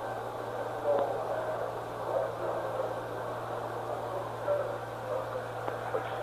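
Hiss and a steady hum on an old narrow-band radio communications recording, with a few faint, unintelligible voice fragments breaking through.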